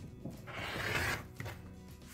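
Rotary cutter slicing through several layers of quilting fabric along an acrylic ruler on a cutting mat: one short rasping stroke of about a second. Faint background music underneath.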